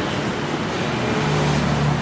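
Road traffic noise with a vehicle engine hum that builds in the second half.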